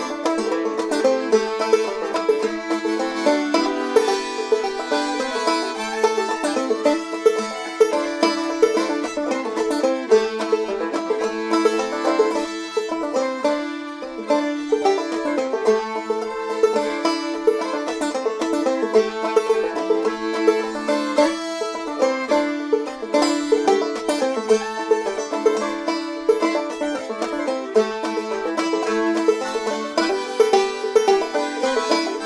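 Acoustic folk trio playing an instrumental passage: plucked banjo, bowed fiddle and button accordion together in a lively, steady tune.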